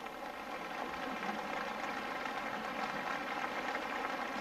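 A concert audience applauding steadily, many hands clapping together.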